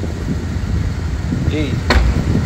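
Convertible car's engine idling in a steady low rumble, with a sharp click near the end.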